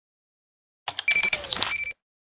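Electronic outro sound effect: a quick run of clicks with a steady high beep, about a second long, starting a little under a second in and cutting off suddenly.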